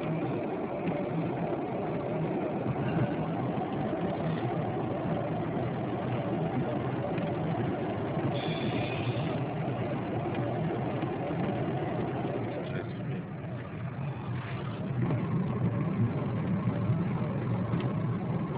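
Car driving along a road, heard from inside the cabin: a steady engine hum under tyre and road noise. A brief higher tone sounds for about a second partway through, and the noise eases off for a moment before growing a little louder again.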